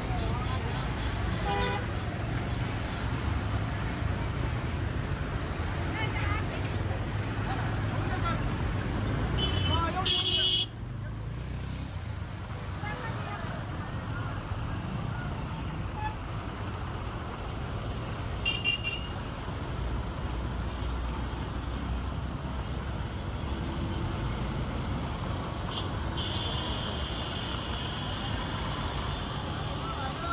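Traffic noise from a jam of trucks and cars: a steady low engine rumble, broken by vehicle horns honking. One honk about a third of the way in cuts off suddenly, a short one comes later, and a longer one is held near the end.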